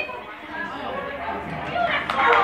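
Indistinct chatter of several people talking.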